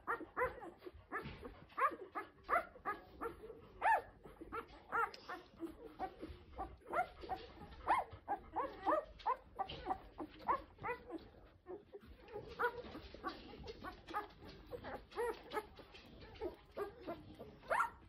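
Ten-day-old golden retriever puppies squeaking and whimpering while nursing: a steady stream of short, high calls, several a second, with a sharper squeal near the end.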